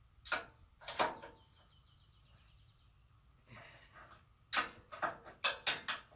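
Metal clicks and clanks from a hand wrench working the bolt that holds a kingpin adapter in a steel gooseneck coupler tube. A few sharp clicks early on, then a run of fine rapid ticks, and near the end a quick cluster of five or six sharp metal knocks, the loudest sounds here.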